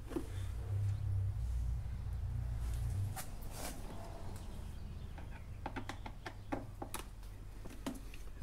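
Scattered small clicks and taps of a screwdriver and hands handling a scooter's plastic air box cover, over a low rumble that fades out about three seconds in.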